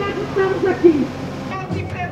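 A voice amplified over a sound truck's loudspeakers at a street demonstration. About one and a half seconds in it cuts abruptly to loud singing or chanting with music.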